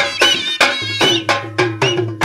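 Dhol drums beaten in a fast, steady rhythm, about four to five strokes a second.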